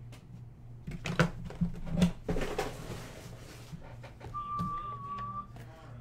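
Cardboard card boxes handled on a desk: a few light knocks and a brief rustle, then a single steady high tone lasting about a second near the end.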